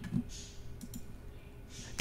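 A few faint, quick clicks of computer input, the key or button press that sets off a hot reload of the app.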